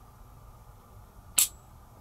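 A single sharp metallic click about one and a half seconds in: the hammer of a stainless Smith & Wesson Model 64 .38 Special revolver falling as the cocked single-action trigger is dry-fired, a crisp, clean break.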